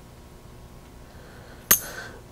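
A single sharp metallic clink near the end, with a brief high ring: a slotted metal mass being set onto a force-table weight hanger. Otherwise quiet room tone.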